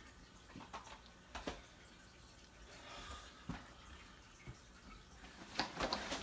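Faint rustling and scattered soft knocks of clothes being handled and folded over a suitcase, with a louder burst of rustling near the end.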